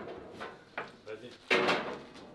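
Table football play: the ball and the rods knocking and clacking against the table, with a loud bang about one and a half seconds in.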